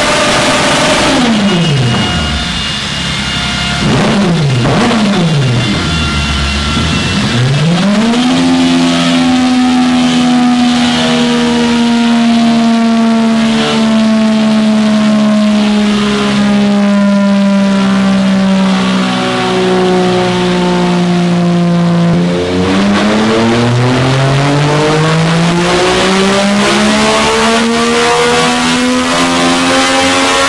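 Yamaha MT-09's three-cylinder engine, with an aftermarket exhaust and a remap, running at full tilt in sixth gear on a chassis dynamometer near 300 km/h. The revs dip and recover several times in the first few seconds, then hold in a long, slowly sagging drone. From about two-thirds of the way in, they climb steadily again.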